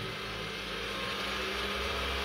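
Joola TT Buddy V300 table tennis robot running just after being switched on, its motors giving a steady low hum.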